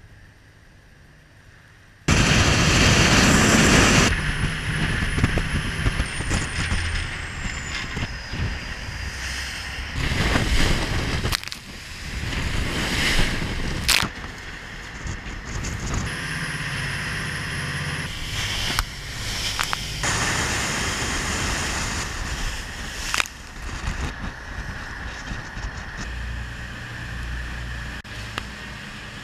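KNRM lifeboat running at speed through choppy water: steady engine rumble mixed with rushing water, spray and wind buffeting the microphone, starting loudly about two seconds in, with a few sharp knocks along the way.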